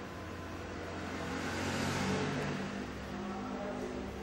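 A motor vehicle passing by: a low engine hum and a hiss that swell to a peak about two seconds in and then fade away.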